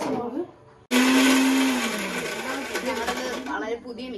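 Electric mixer grinder running: it starts abruptly about a second in, loud and whirring with a steady low hum, then the motor pitch drops and the sound dies away near the end.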